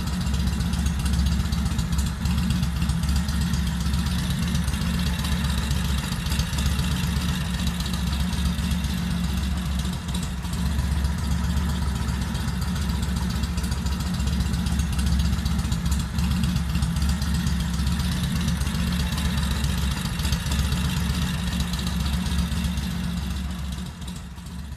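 An engine idling steadily, a continuous low rumble that stays even throughout.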